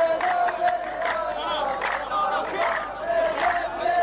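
A group of men chanting a verse together in a drawn-out, sung refrain: the row of men in a qalta poetry duel repeating the poet's line.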